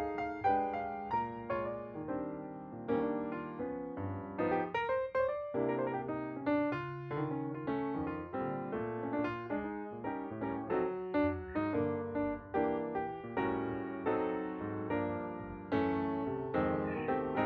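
Background piano music: a steady run of struck notes and chords, about two attacks a second, each fading before the next.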